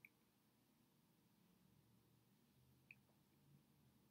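Near silence: room tone, with two faint short clicks about three seconds apart.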